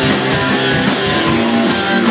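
A live rock band playing, with strummed electric guitar over a drum kit, loud and steady.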